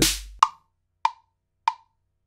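An 808 kick and snare hit dies away in the first half second. Then GarageBand's wood-block metronome counts in with three short, evenly spaced clicks a little over half a second apart.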